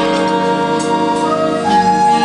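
A jazz big band playing live, holding sustained chords that move to a new chord near the end.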